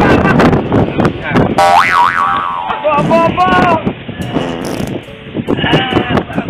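A comic springy boing-like sound effect, a quick up-and-down pitched glide about two seconds in, laid over people's voices calling out without clear words.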